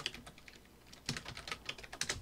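Computer keyboard being typed on: quiet, light key clicks in a short run near the start and a longer, quicker run in the second half.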